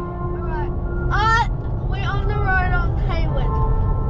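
Steady road and engine rumble inside a moving car's cabin, with a child's high voice making about four short, swooping calls without clear words.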